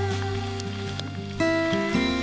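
Background music with held notes, moving to a new chord about one and a half seconds in.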